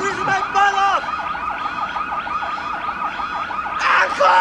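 Police car siren in a fast yelp, its pitch warbling up and down several times a second. Right at the end, a man starts to shout.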